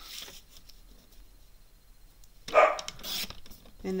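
A dog gives a single short, loud bark about two and a half seconds in, over quiet handling of cardstock at a paper trimmer.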